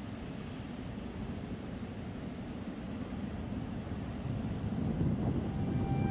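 Ocean surf breaking and washing, with wind rumbling on the microphone; the wash grows slowly louder.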